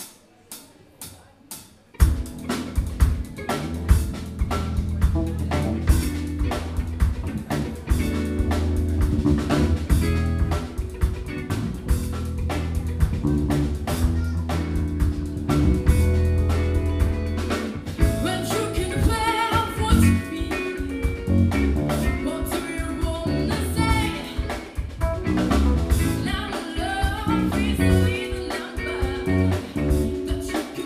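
Live band of drum kit, electric guitar, bass guitar and piano starting a song after four count-in clicks, then playing on; a female singer comes in after about 18 seconds.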